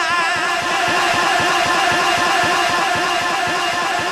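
A man's voice through a public-address loudspeaker holding one long sung note with a wavering vibrato, over a low rumble of crowd noise.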